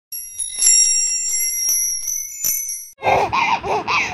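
Channel logo jingle: bright, high bell-like chimes ringing with small tinkling clicks for about three seconds. A baby's babbling voice follows in the last second.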